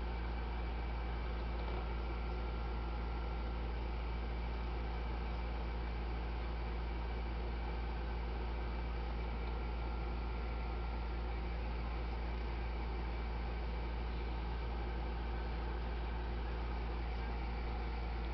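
Steady low hum with an even hiss over it, with no distinct sounds.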